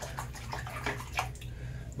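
Tap water running into a bathroom sink as a safety razor is rinsed under it, with a few light splashes.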